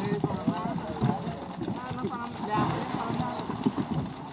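Several men's voices talking and calling out, with irregular knocks and thuds among them.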